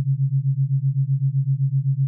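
Theta binaural-beat tone: a single low, pure sine tone that pulses about eight times a second, at the 7.83 Hz Schumann-resonance beat rate.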